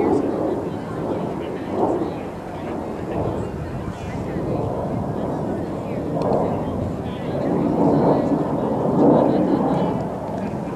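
Indistinct voices of people talking near the microphone over a steady low rumble, louder over the last few seconds.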